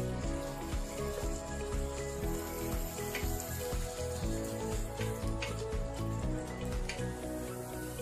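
Shrimp and asparagus sizzling in a hot frying pan as a wooden spatula stirs them, with a few light clicks of the spatula against the pan. Background music plays over it throughout.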